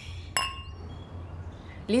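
Two wine glasses clinked together in a toast: one bright clink about a third of a second in, its ringing tones fading over about half a second.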